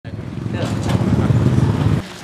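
Voices over a loud, low rumble that builds during the first second and stops abruptly at the end.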